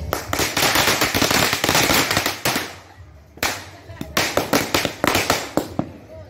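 Firecrackers going off in a bonfire as rapid, crackling pops in two runs: a dense run lasting about two and a half seconds, a short lull, then another run of sharper, more spaced pops.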